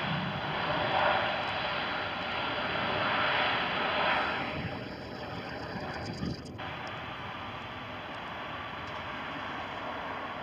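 Jet engines of an easyJet Airbus A320-family airliner on its landing roll-out, a continuous rushing rumble that is loudest over the first four seconds or so and then eases to a lower, steady level.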